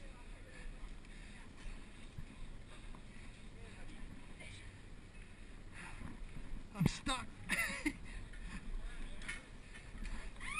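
Low rustling and handling noise from crawling over a rope cargo net on a metal frame, with a few sharp knocks about seven seconds in.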